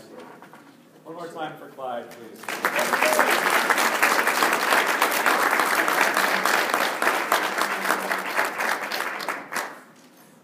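Audience applauding. The applause starts about two and a half seconds in, holds steady, and fades out just before the end.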